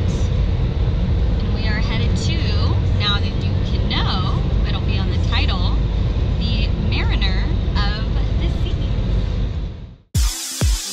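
Steady low rumble of road and engine noise inside a moving car's cabin, with a woman talking over it; it all fades out just before the end.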